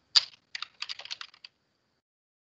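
Typing on a computer keyboard: one sharp keystroke, then a quick run of about a dozen keystrokes that stops about a second and a half in.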